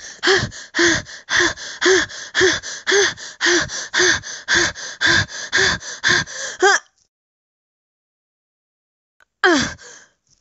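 A woman panting in short, voiced "ah" breaths, about two a second, in a steady running rhythm. The panting cuts off suddenly about seven seconds in, and another breathy vocal sound starts near the end.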